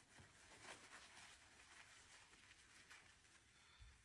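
Near silence, with faint rustling and scuffing of a paper towel being wiped over a kitchen countertop.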